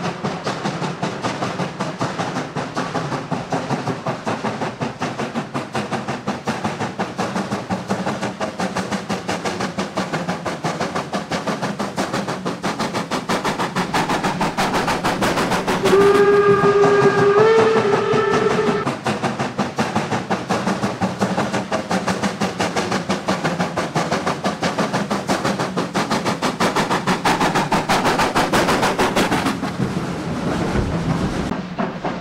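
Steam locomotive working hard while hauling a passenger train, its exhaust chuffing in a rapid, even beat. About halfway through it gives one whistle blast of roughly three seconds, which steps up in pitch partway through.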